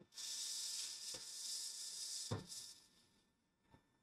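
Hot-air rework station blowing with a steady hiss for about two and a half seconds while a small surface-mount IC is desoldered from a phone logic board, with a light knock a little past two seconds in and a faint click near the end.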